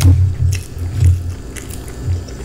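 Close-miked chewing of a mouthful of food, slow even chews about twice a second, with a sharp click at the start.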